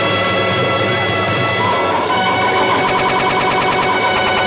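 Instrumental film background score: held chords of several instruments, with a fast, even pulsing figure from about halfway through.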